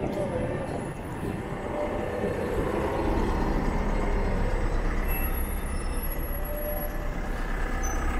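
City street traffic noise, with a double-decker bus running just ahead. A low rumble grows stronger about halfway through as the bike draws up close behind the bus.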